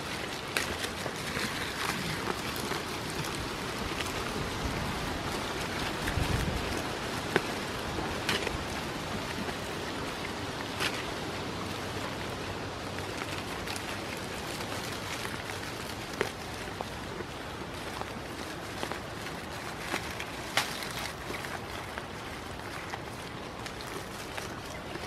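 Goats browsing a leafy oak branch at close range: a steady crackly rustle of leaves being pulled and stripped, with scattered sharp clicks.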